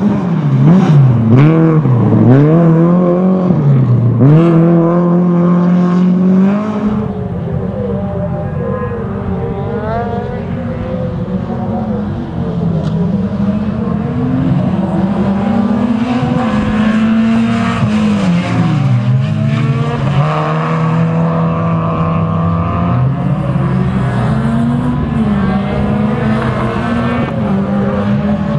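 Renault Clio rally car engines revving hard on a circuit, pitch climbing and dropping repeatedly through gear changes and lifts off the throttle. The first six seconds are the loudest, with quick rev dips; after that the engines are a little quieter and rise and fall more slowly.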